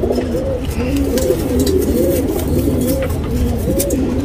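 Domestic pigeons cooing, several calls overlapping without a break.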